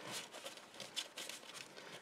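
Faint rustling and a few light taps of cardstock as a folded card is pushed into its paper belly band and pressed flat.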